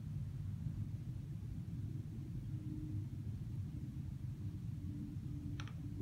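Low, steady background rumble of room tone, with a faint short click near the end.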